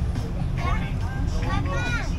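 Shuttle bus running along with a steady low rumble, heard from on board, with passengers' voices over it from about half a second in.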